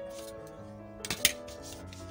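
Background music with held notes, and about a second in a brief clatter of a few sharp clicks as a plastic set square is shifted and set down on the drawing paper against the ruler.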